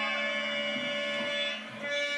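Harmonium playing sustained, reedy held notes, with a brief dip in loudness near the end.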